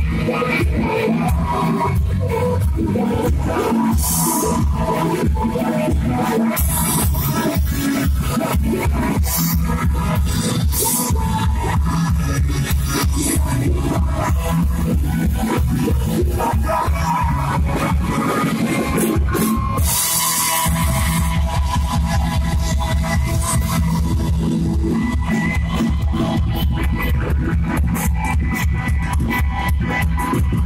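Live rock band playing loudly, with driving drums and bass. About twenty seconds in the bass drops out briefly, then comes back in heavier.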